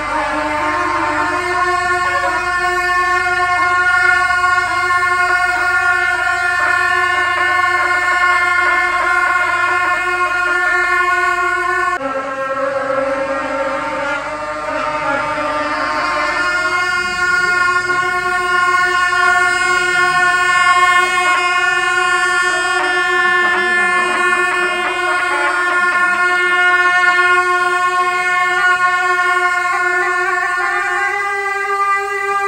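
Gyaling, Tibetan double-reed shawms, played together in long held notes. The pitch steps down about twelve seconds in and rises back about four seconds later.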